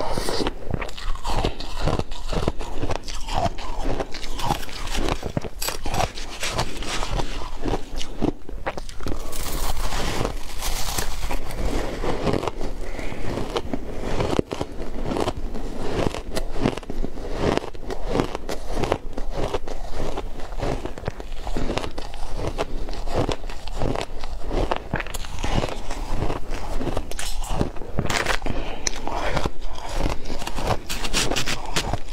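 Crushed ice being bitten and chewed close to the microphone: loud, dense, irregular crunching that keeps up without a break.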